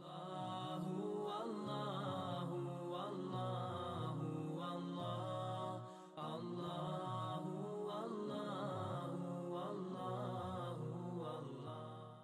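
Outro music: layered voices chanting a slow melody in the manner of a nasheed, with a short break about six seconds in, fading away at the very end.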